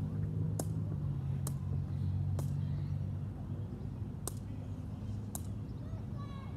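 Sharp knocks of a woven cane ball (sepak takraw-style) being kicked back and forth: five kicks at uneven gaps of about a second. Under them runs a low steady hum that eases about three seconds in.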